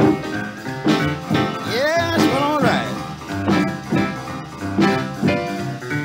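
Boogie-woogie piano with guitar accompaniment, in a 1950s mono studio recording, playing a steady rolling rhythm. A gliding, bent note rises and falls about two seconds in.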